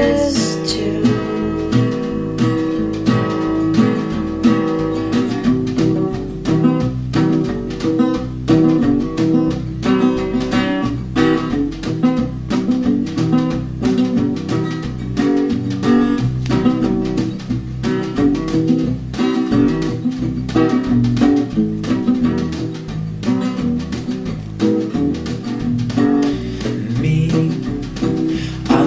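Instrumental passage of a song, with strummed acoustic guitar keeping a steady rhythm.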